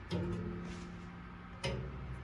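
Taut 22-gauge galvanized steel overhead wire plucked by a finger, twanging with a low ringing note twice: once at the start and again about a second and a half in. The plucking checks that the wire is strung under good tension.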